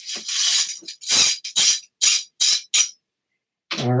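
A snake brush rasping through a trombone's inner slide tube: one longer scrubbing pass, then about five short, quick strokes, then it stops.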